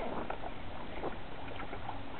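Water splashing and rushing irregularly against a kayak's bow as the kayak is towed through choppy sea by a hooked fish.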